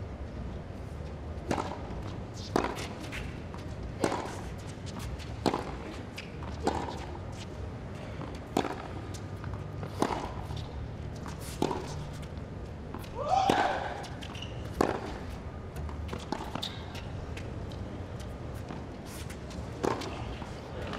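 Tennis rally on a hard court: sharp pops of racket strikes on the ball and ball bounces, about one every one to two seconds, with a short grunt-like vocal sound about two-thirds of the way through.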